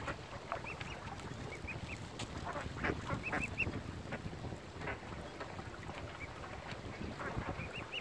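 Waterbirds calling: short, high-pitched calls in quick runs of two or three, repeated every second or two over a low, noisy background.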